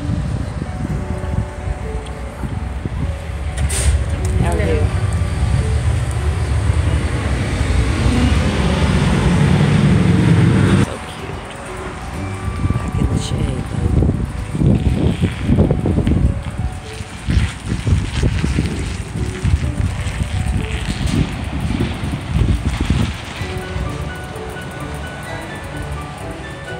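Wind buffeting the microphone in a heavy, uneven rumble that stops abruptly about eleven seconds in and returns in gusts later on, over faint music and voices.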